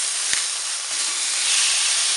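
Pork chops sizzling on a hot oiled plancha. There is a light click about a third of a second in, and the sizzle swells near the end as a chop is turned over with a wooden spatula.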